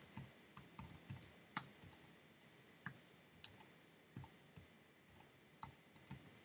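Faint, irregular clicking of computer keyboard keys being typed, a few keystrokes a second.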